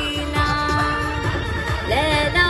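A woman singing live through a PA loudspeaker over a backing track with a steady beat; she holds one long note for about the first second, then glides up into the next phrase near the end.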